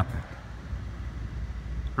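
Outdoor background noise in a pause between speech: a low, steady rumble with a faint hiss and no distinct events.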